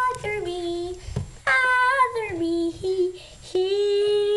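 A girl singing unaccompanied: phrases of long held notes that slide down in pitch, with short breaks between them.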